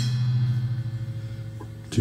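A live rock band's full sound stops abruptly, leaving a low held note from the amplified instruments ringing out and fading away over about two seconds.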